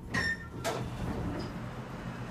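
Westinghouse hydraulic elevator's car doors sliding open as the car arrives at a floor: a sharp knock with a brief high ring just after the start, a second knock about half a second later, then the doors running open.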